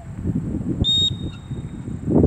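A dog-training whistle blown once about a second in: one steady high tone, sharp at first and then trailing off faintly. Wind buffets the microphone throughout.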